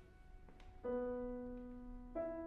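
Grand piano played slowly: a held note fades away, then about a second in a new note is struck and rings on, sustaining as it slowly decays.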